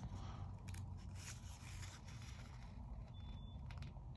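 Faint brushing and light ticks of hands shifting on the paper pages of a held-open comic book, over a low steady room hum.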